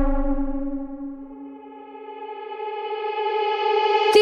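Hands-up dance track in a breakdown: one held synthesizer chord with its bass dropping out at the start, its top end closing down and getting quieter about a second and a half in, then opening up and swelling again towards the end.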